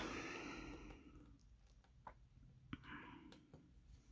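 Near silence: a soft breath fades out in the first second, then two faint clicks and a brief soft rustle from hand-stitching with needle and thread through aida cloth.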